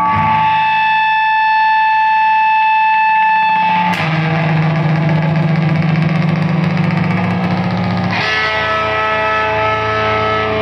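Sustained, heavily distorted noise drone from an electric guitar lying on the floor with a lit device held against its pickups, played through a fuzz effects pedal. It holds steady droning tones that jump to a new pitch abruptly about four seconds in and again about eight seconds in.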